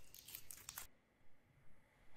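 Near silence: room tone with a few faint, short rustles or ticks in the first second.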